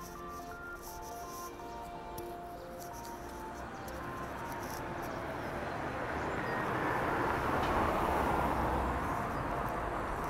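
Background music of short notes fades out over the first few seconds. Then the noise of a car passing on the street swells and eases in the second half.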